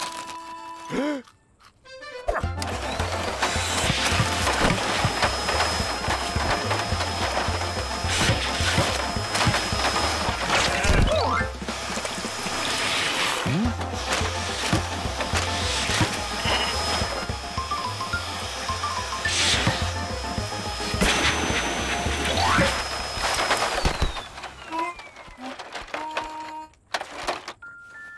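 Upbeat cartoon music with a pulsing bass beat, over a dense rushing noise of a vacuum cleaner running. The noise starts abruptly about two seconds in and stops a few seconds before the end.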